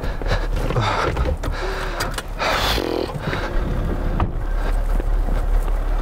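A car running with a steady low rumble, with a sigh about a second in and a brief rushing noise about two and a half seconds in.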